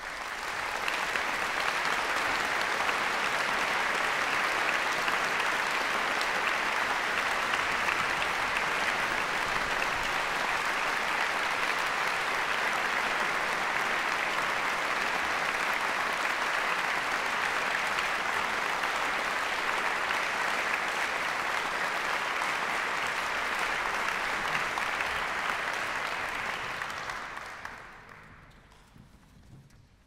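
Concert audience applauding, a steady dense clapping that dies away quickly near the end.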